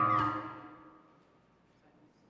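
Experimental electronic music ending: sustained tones with downward pitch sweeps fade away within about the first second, leaving faint room sound.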